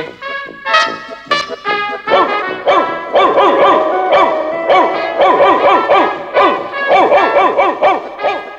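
Cartoon background music, with a dog's short yelping barks repeated several times a second over it through the second half.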